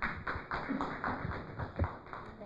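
A run of quick taps and knocks: handling noise from a handheld microphone as it is carried and passed to the next speaker, with footsteps on a wooden floor.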